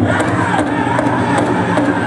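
Powwow drum group singing a buckskin contest song: many male voices chanting together over an even, unison beat on the big drum, about two and a half beats a second.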